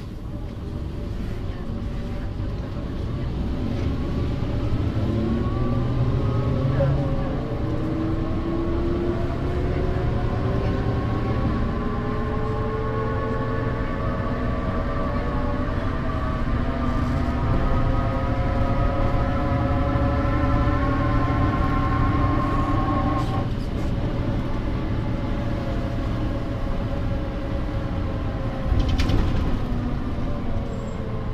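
Drivetrain whine of a 1992 Mercedes-Benz O405 city bus, from its ZF 5HP500 automatic gearbox and rear axle, rising slowly in pitch as the bus gathers speed over the steady low rumble of its OM447h diesel, heard inside the cabin over the wheel arch. About 23 seconds in the whine breaks off, and a knock comes near the end.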